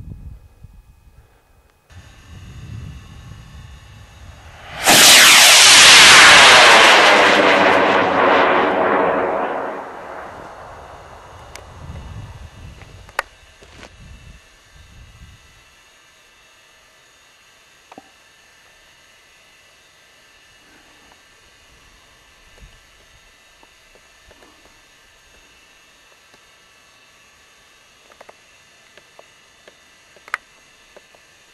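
PVC-cased potassium nitrate and sugar rocket motor firing, starting suddenly about five seconds in with a loud roar. The roar fades over the next several seconds and its tone sweeps downward as the rocket climbs away.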